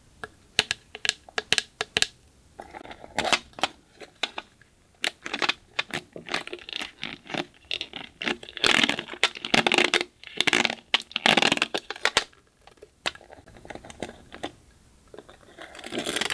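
Hands squishing and stretching slime: a run of sticky clicks and crackling pops, thickening into a denser, louder stretch of squelching past the middle.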